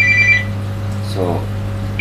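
Electronic ringing: two close high tones sounding together, which cut off about half a second in. A steady low electrical hum runs underneath.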